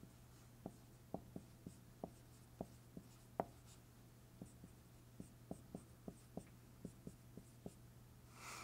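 Marker pen writing on a whiteboard: a quiet run of small irregular ticks and taps as the strokes of numbers and letters are made, over a faint steady low hum.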